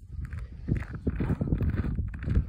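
Footsteps on snow-covered lake ice: a run of irregular low thumps.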